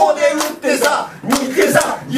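Several loud voices crying out over one another, with a few sharp claps.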